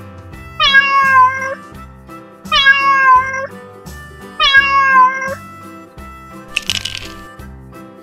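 Domestic cat meowing three times, evenly spaced, each meow about a second long, over children's background music. A short noisy burst follows near the end.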